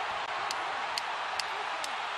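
Arena crowd cheering in a steady roar, with sharp clicks about twice a second over it.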